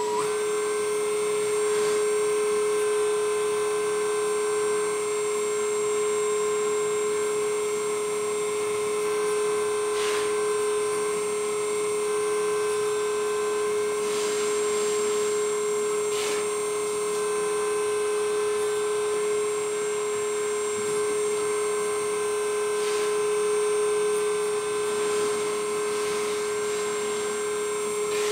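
Hydraulic pump of an RC Komatsu PC360 excavator model running with a steady, even-pitched electric whine as the boom, arm and bucket are worked, with a few faint brief ticks.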